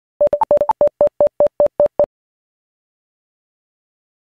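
A quick run of about a dozen short electronic beeps over about two seconds. Most are on one pitch, with two higher beeps among the first few.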